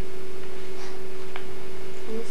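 A steady electronic hum on one high-ish note over a hiss of tape noise from an old camcorder recording, with a faint click about one and a half seconds in.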